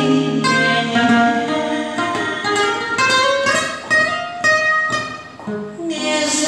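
Acoustic guitar playing a picked instrumental interlude, one note after another. A woman's singing voice comes back in near the end.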